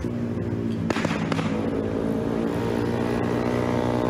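Motorbike engines running hard at steady high revs as riders speed along a street, with a couple of sharp cracks about a second in.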